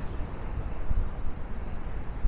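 City street ambience: steady traffic noise from passing cars, with an uneven low rumble of wind on the microphone.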